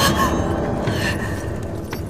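Tense horror-film score and sound design: a low, dark rumble that slowly fades, with a short sharp hit near the end.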